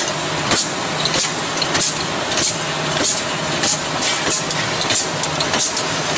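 Automatic rotary bottle-capping machine running: a steady machine hum with a short, sharp stroke repeating about every 0.6 seconds as the machine cycles.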